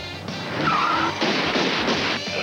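Car tyres squealing in a skid: a short high squeal about half a second in, then a loud rush of noise, over music.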